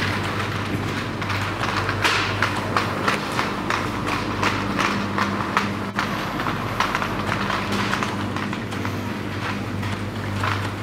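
Footsteps on a hard shop floor, about two to three a second, starting about two seconds in and thinning out near the end, over a steady low hum.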